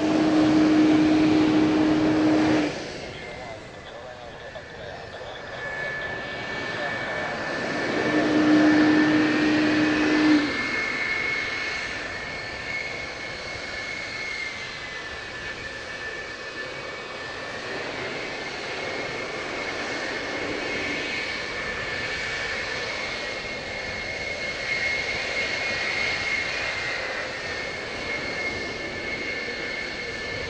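JASDF F-4EJ Kai Phantom II's twin J79 turbojets running at low power on the ground, a steady high-pitched turbine whine over a jet rush. There are two louder stretches with a low hum, one at the start and one about eight to ten seconds in, each cutting off suddenly.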